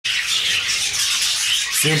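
Many caged canaries and parrots chirping and chattering at once, a dense continuous twitter of overlapping calls.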